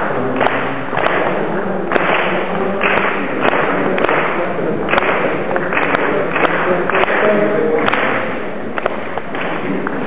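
A group clapping a rhythm together in short, slightly ragged strokes, with voices chanting or singing syllables over the claps.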